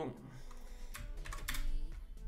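Computer keyboard keystrokes: a few key clicks about a second in and again around one and a half seconds, over faint background music.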